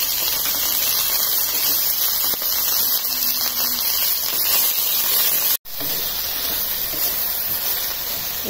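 Chayote, green chillies and shallots sizzling in a steel pan as they are sautéed and stirred with a wooden spoon, a steady hiss. The sound drops out abruptly for an instant a little over halfway through.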